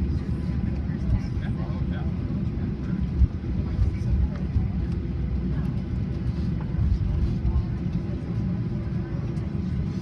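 Cabin noise of a Boeing 737-800 taxiing after landing: a steady low rumble from the CFM56 engines at idle and the airframe rolling on the taxiway, with indistinct passenger chatter under it.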